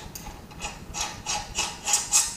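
Metal bolt being screwed in by hand through a license plate bracket into a tow hook. Its threads scrape in short repeated strokes, about three a second, growing louder in the second half.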